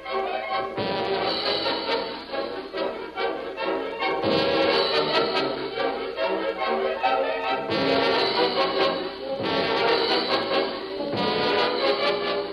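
Orchestral bridge music led by brass, including trombones and trumpets, swelling through several phrases. It has the dull, treble-less sound of an early 1940s radio transcription.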